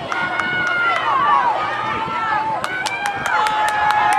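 Football crowd yelling and cheering as a play unfolds, several voices shouting over each other, with handclaps joining in about two-thirds of the way through.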